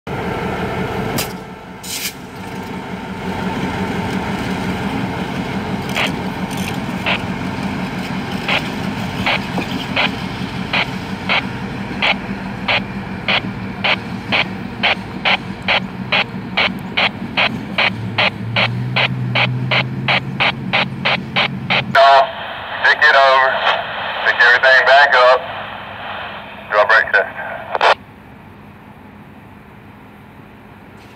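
EMD GP38-2 diesel locomotive's 16-cylinder two-stroke engine running with a steady drone as it moves, its wheels clicking over rail joints, the clicks coming faster and faster as it picks up speed. About 22 s in the sound changes abruptly to a crew radio's tinny voice chatter that ends near the end.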